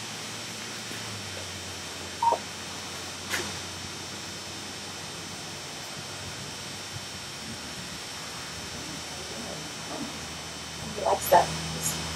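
Quiet stall room tone with a steady low hum. A short faint sound comes about two seconds in and a brief sharp click a second later, and voices begin near the end.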